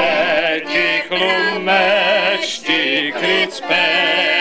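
A group singing a song to accordion accompaniment, in phrases with brief breaks between them.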